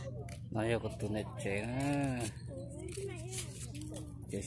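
A person's voice talking in short phrases, with one long drawn-out vowel about one and a half to two seconds in, over a faint steady low hum.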